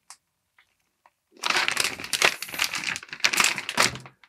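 Large silver foil bag crinkling and crackling as it is handled and turned around, starting about a second and a half in.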